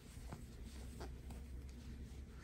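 Faint scratchy rustling of thick blanket yarn being drawn through stitches on a crochet hook, with a few soft ticks.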